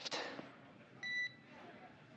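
A single short, high electronic beep about a second in, over faint radio hiss: the tone on the SpaceX–Dragon radio loop as a transmission ends.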